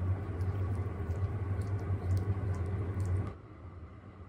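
A Pomeranian licking a person's fingers: faint small clicks over a steady low room hum. The sound drops to a quieter hum about three seconds in.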